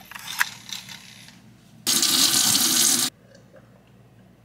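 A few light clinks of a spoon stirring in a glass bottle, then a kitchen faucet running for just over a second, turned on and off abruptly.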